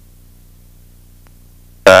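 Light aircraft's piston engine and propeller droning low and steady on approach, heard quietly through the headset intercom, with a few faint ticks. A voice cuts in right at the end.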